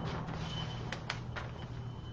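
Low, steady background hum with a faint high whine and a few soft ticks near the middle; no speech.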